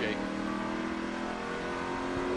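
A Toyota Tundra NASCAR Craftsman Truck Series race truck's V8 running flat out at speed on the oval, heard through the truck's onboard camera. It is a steady engine note with an even, unchanging pitch, over road and wind noise.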